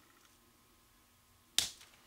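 A single sharp click about one and a half seconds in, as a straight pin is handled and pressed into the quilling work board.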